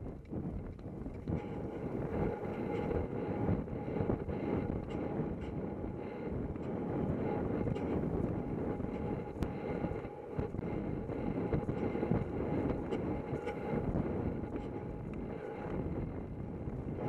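Wind buffeting a helmet-mounted camera's microphone as a horse gallops across grass, with the dull, irregular thuds of its hoofbeats and the rider's jostling under a steady rush of noise.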